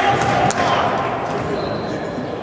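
Echoing ambience of an indoor soccer hall, with voices of players and onlookers carrying in the large room. A single sharp knock sounds about half a second in.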